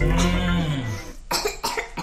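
A young girl's drawn-out vocal sound followed, about a second in, by a quick run of short coughs, over background music. The cough is from a cold.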